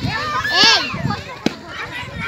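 Children's voices calling and chattering excitedly, loudest about half a second in, with a single sharp click about one and a half seconds in.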